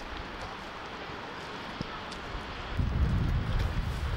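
Outdoor ambience: a steady hiss, then from near three seconds in, wind buffeting the microphone with a loud, uneven low rumble.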